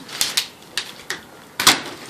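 Plastic water bottles knocking on the hard top of a cabinet as they are flipped and set down: a string of sharp clicks and knocks, the loudest a little over a second and a half in.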